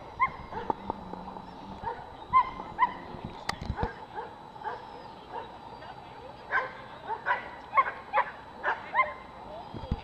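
A dog giving short, high barks on and off, most of them in a quick run in the second half.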